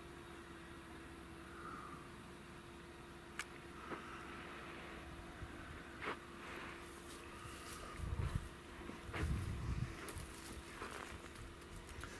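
Faint outdoor background with a steady low hum and a few sharp clicks. From about eight seconds in, footsteps crackle through dry grass and brush, with low wind buffeting on the microphone.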